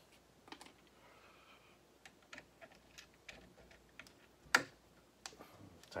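Faint, scattered small metal clicks and taps of a quarter-inch router bit being handled and fitted into the collet of a DeWalt 611 router, with one sharper click about four and a half seconds in.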